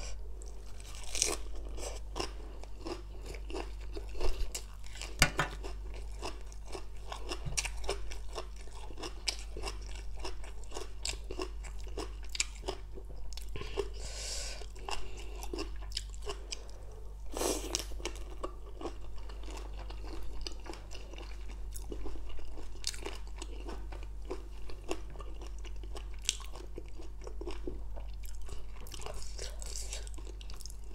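Close-up chewing and crunching of spicy papaya salad and raw leafy greens, many small irregular crunches and wet mouth clicks, with a few louder crunches about four and five seconds in.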